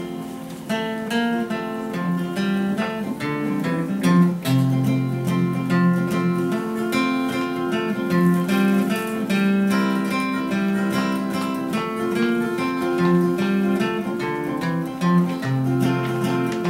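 Acoustic guitar playing an instrumental introduction alone, moving bass notes under a steady rhythm of strums.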